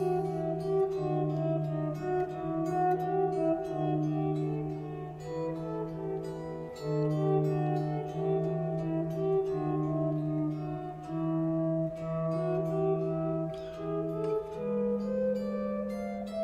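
Epiphone electric guitar played fingerstyle: a steady running line of eighth notes moves up and down in a sequence over repeated, sustained low bass notes. The bass note steps up a little near the end.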